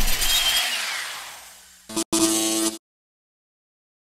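Intro sound effect: a whoosh with a falling sweep that fades over about two seconds. Then, about two seconds in, a short electronic tone that cuts off suddenly.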